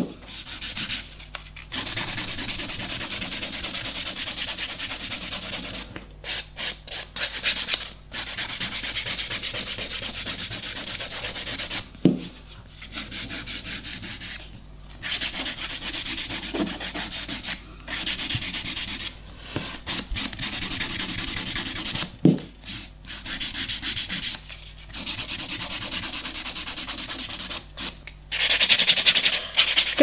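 Hand-held nail file rubbing back and forth across a sculpted acrylic nail, in long runs of quick filing strokes broken by short pauses, with choppier, separate strokes near the start and near the end.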